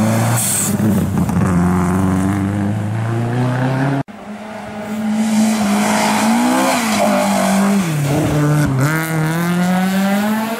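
Rally car engines at full throttle on a snow stage, two passes in a row. First a Subaru Impreza pulls hard with its pitch climbing steadily. The sound cuts off abruptly about four seconds in, and a second rally car's engine takes over, rising, dropping off briefly as it lifts past halfway, then climbing again near the end.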